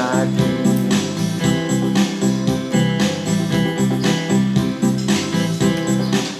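Instrumental backing music of a pop song, guitar strummed over keyboard with a steady beat of about two pulses a second, playing between sung lines; the last sung note trails off at the very start.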